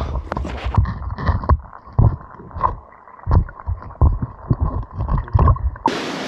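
Irregular low thumps and rumbling on the microphone, about two a second: a handheld camera jolting with the steps of someone walking a dirt bush track.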